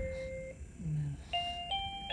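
Musical crib mobile playing an electronic lullaby tune in simple chime-like notes: one held note, a short pause, then two notes stepping upward.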